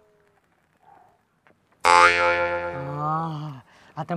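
An edited-in comedy sound effect: a pitched, twangy tone that starts abruptly about two seconds in, holds for nearly two seconds and dips in pitch before stopping.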